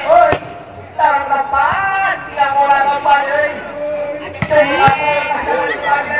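Voices calling and shouting during a volleyball rally, with sharp slaps of the ball being struck: one about a third of a second in and two more between four and five seconds.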